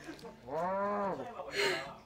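A person's drawn-out, wordless vocal sound, like a muffled "aww" or "mmm", held for under a second with its pitch rising and then falling, followed by a short breathy hiss.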